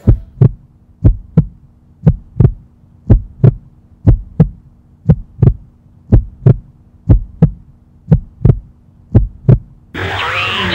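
Heartbeat sound effect: a steady double thump, about once a second, over a low steady hum.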